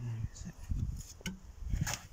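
Low rumbling handling noise with a few light clicks, and a brief hummed voice sound right at the start.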